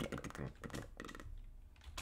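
Typing on a computer keyboard: a quick run of key clicks that thins out about halfway through.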